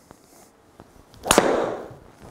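Driver striking a golf ball off a tee on a simulator hitting mat: one sharp crack about a second and a third in, with a rush that fades over the next half second. The club is coming straight down into the ground, a steep downward strike.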